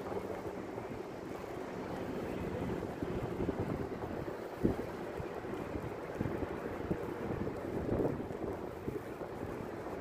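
Outdoor city ambience: a steady low rumble of traffic with wind buffeting the microphone. A faint steady hum fades out in the first few seconds, and there is a single sharp knock about four and a half seconds in.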